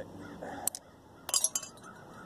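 Short copper pipe clinking as it is handled and bent by hand: a single light click, then a brief cluster of metallic clinks with a high ring about a second and a half in.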